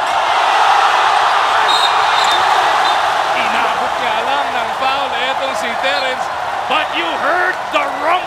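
Basketball arena crowd noise: a loud, steady roar of spectators that peaks in the first second and then slowly eases, with sneakers squeaking on the hardwood court from about halfway through.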